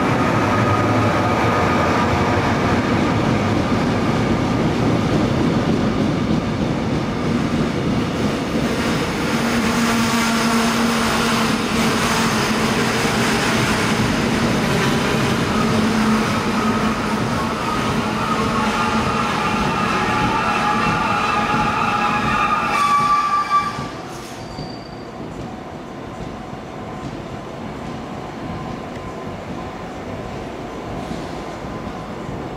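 Locomotive-hauled Korail passenger train passing close by, a loud steady rumble of running wheels on the rails. It is joined by high-pitched wheel squeal that grows louder after about 18 s. About 24 s in, the sound drops abruptly to a quieter rumble.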